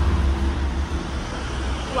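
Steady street traffic noise with a deep low rumble.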